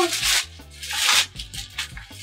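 Plastic shipping mailer and bubble wrap crinkling in two rough bursts as a bubble-wrapped box is pulled out of the bag, over background music.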